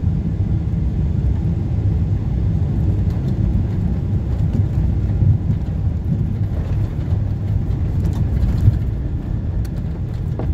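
Steady low rumble of a jet airliner's engines and rushing air, heard from inside the cabin during landing, with a few faint ticks and rattles near the end.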